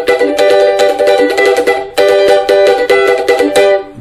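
Cavaquinho paulistinha strummed in a fast, steady chord rhythm, with a short break about two seconds in, then strummed again until it trails off near the end.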